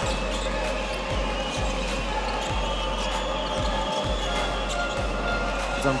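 A basketball being dribbled on a hardwood court, about two bounces a second, over a steady arena background hum.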